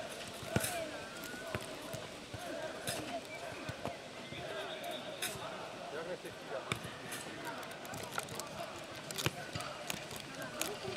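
Futnet ball being kicked and headed back and forth: sharp thuds every second or so, unevenly spaced, with boys' voices and calls in the background.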